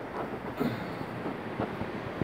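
Rubbing and rumble from a hand-held phone microphone being carried while moving, with a few soft knocks about half a second and a second and a half in.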